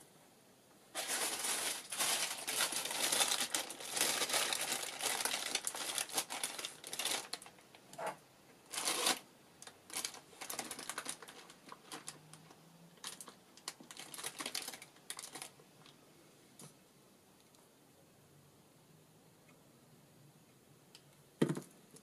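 Paper or plastic craft materials crinkling and rustling as they are handled: dense crinkling for about six seconds, then shorter bursts of rustling for several seconds more. A single sharp click comes near the end.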